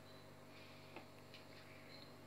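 Near silence: room tone with a faint steady hum, and one faint tick about a second in.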